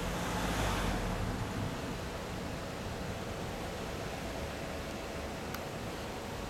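Steady outdoor background noise, an even low rumble and hiss, a little louder in the first second; the motorcycle's engine is not running.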